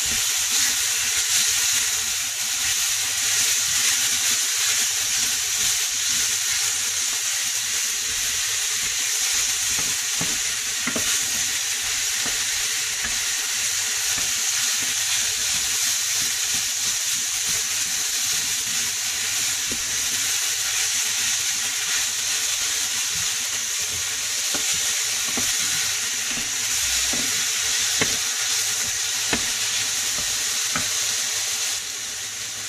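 Ground turkey, zucchini and red onion sizzling in a hot skillet while being stirred with a wooden spoon: a steady frying hiss.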